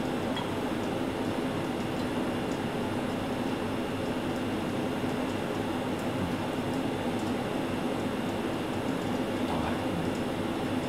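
Steady, unchanging mechanical hum with a rushing noise underneath, with a few faint ticks.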